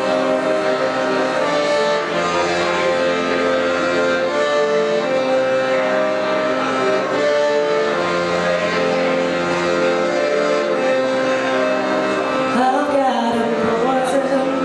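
Piano accordion playing an instrumental passage of long held chords and melody notes.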